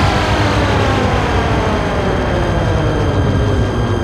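Electronic dance track in a breakdown with no drums: a dense synthesizer sweep of many tones gliding slowly downward over a low rumble, like a jet passing.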